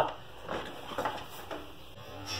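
A few faint knocks and clicks, about half a second apart, from a dirt-jump mountain bike being set off and ridden across a tiled floor.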